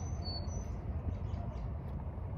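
A few short, high bird chirps in the first second, over a steady low outdoor rumble.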